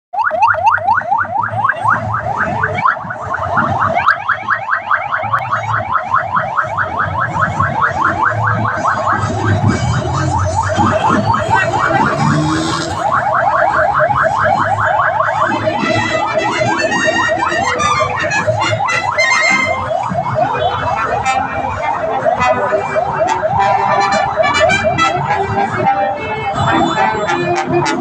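Police motorcycle sirens yelping: a fast, steady train of rising wails repeated several times a second. In the second half the sweeps turn less regular and overlap with other sound.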